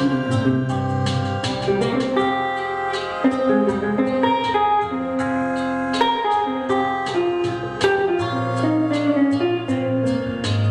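Solo archtop jazz guitar playing a tango melody, with single plucked notes over bass notes and chords in a chord-melody arrangement.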